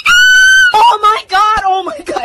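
A loud, very high-pitched shrieking voice crying "oh my god": one long held shriek lasting under a second, then shorter cries that waver and slide in pitch.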